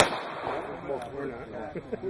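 A single loud handgun shot at the very start, followed by people's voices talking, with fainter cracks about one and two seconds in.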